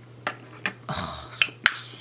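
Milani Bella eyeshadow pots clicking and clacking as they are picked up from a pile and set down into an acrylic organizer: about five sharp separate clicks, the sharpest about two-thirds of the way through.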